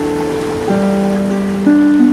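Renaissance harp playing a slow melody, single plucked notes left ringing, with a new low note about two-thirds of a second in and another near the end. A steady hiss of ocean surf runs underneath.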